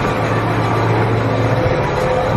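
Tractor engine running steadily with a low hum, heard from inside the cab.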